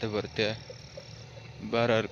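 A man speaking in short phrases, with a pause of about a second in the middle. A faint steady low hum runs underneath.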